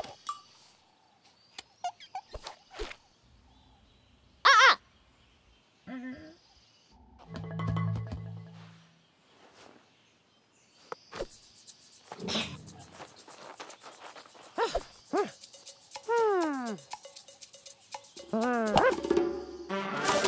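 Cartoon soundtrack of assorted short comic sound effects over light music: a loud brief squeak-like sound, a low rumble, a hissy stretch with clicks, and several quick falling whistle-like glides near the end.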